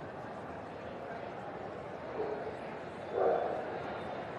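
A dog barks twice over the steady murmur of a large, busy show hall: a short bark about two seconds in, then a louder one about a second later.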